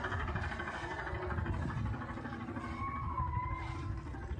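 Steady low rumble of a vehicle moving along a snowy road, with faint music over it and a short wavering note about three seconds in.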